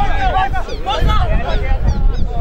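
Several voices shouting and calling over one another, players and sideline spectators during rugby play, with a steady low rumble of wind on the microphone.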